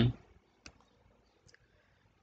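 Two faint clicks of a computer mouse about a second apart, advancing to the next slide.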